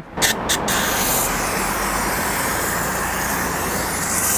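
Aerosol can of silicone lubricant spraying onto a car's rubber window guide channel: a steady hiss that starts about half a second in and holds evenly.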